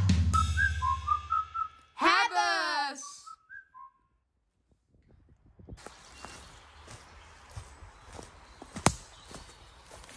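A short whistled jingle of quick notes, with a loud falling slide-whistle-like glide about two seconds in, cuts off; after a second or so of silence, faint footsteps through dry leaf litter in a forest, with one sharp snap near the end.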